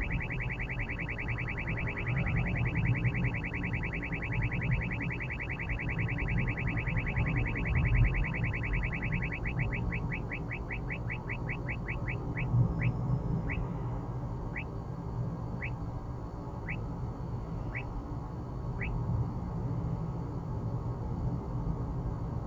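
Uniden R8 radar detector's Ka-band alert: rapid high chirping beeps that start slowing about ten seconds in, thin out to about one a second, and stop a few seconds before the end as the police radar signal falls away behind the car. Low, steady road and engine noise in the car cabin runs underneath.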